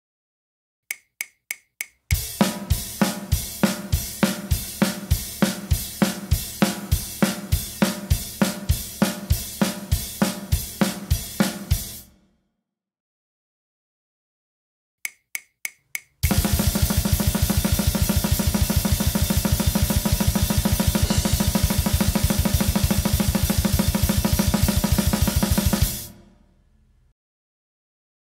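Drum kit playing a traditional blast beat, a single-stroke roll split between a hand and a foot. Four clicks lead into a slower pass of about three hits a second lasting about ten seconds. After a pause and four more clicks comes about ten seconds at extreme speed, ending with the cymbals ringing out.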